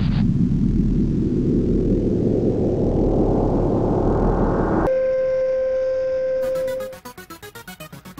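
Intro sound design: a loud rush of television-static noise swelling with a rising sweep, which cuts off suddenly about five seconds in to a steady electronic beep tone. Near the end a fast, pulsing electronic music beat starts.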